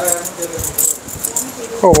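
Rustling and light clicking as a cotton tie-dye nighty is unfolded and shaken out by hand, with a sharp snap of the cloth near the end.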